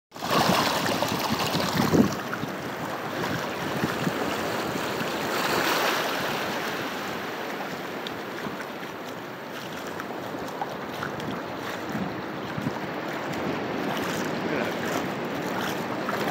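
Surf washing up over sand, loudest in the first two seconds, then a steady rush of waves with wind on the microphone.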